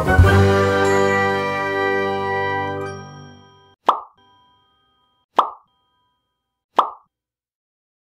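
A short musical sting: a sustained chord fading out over about four seconds, followed by three short popping sound effects about a second and a half apart, the sound of an animated share-button graphic.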